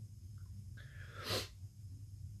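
A short, sharp breath through the nose about a second and a half in, over a faint steady low hum.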